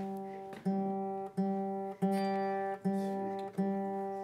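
Acoustic guitar strumming the same chord over and over, about six strums at an even pace, each left to ring and fade before the next.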